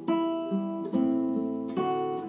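Acoustic guitar playing chords: three chords struck about a second apart, each left to ring and fade.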